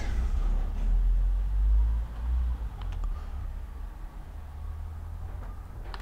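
A deep rumble, loudest for the first two seconds or so and then fading, with a couple of faint metallic clicks about three seconds in as the cross-feed clutch knob of a Boxford lathe saddle is screwed on by hand.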